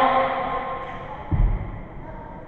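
A drawn-out voice over the hall's PA, ringing with echo, fades out in the first second. About a second and a half in there is a single low thud from the wrestling ring.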